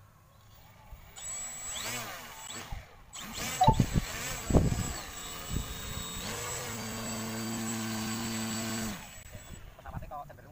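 Electric motor and propeller of a small RC model plane run up on the throttle: the pitch rises and falls a few times, then the motor is held at a steady speed for about three seconds and cut off about nine seconds in. A thin high whine runs alongside, and there are a few loud bumps about four seconds in.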